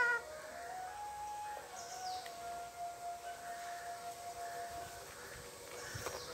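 A rose-ringed parakeet's loud rising screech cuts off just after the start. Then faint steady tones are held for several seconds, stepping in pitch a few times and stopping about five seconds in, from a source that is not seen.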